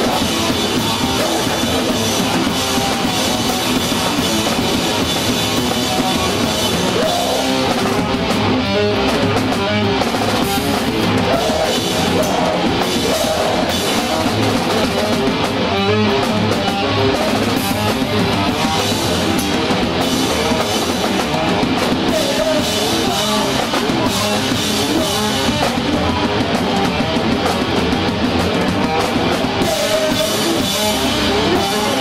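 Metalcore band playing live at full volume: distorted electric guitars and a pounding drum kit, loud and unbroken.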